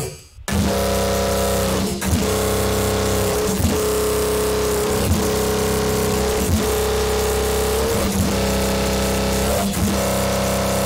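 Aggressive screamer bass synth in Serum holding one sustained note, its tone shifting as its 'sick mode' macro knob is turned. About every second and a half the note swoops briefly down in pitch and back up.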